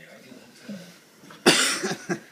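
A person's loud, harsh cough-like burst about one and a half seconds in, followed by a few short breathy bursts; before it there is only faint room sound.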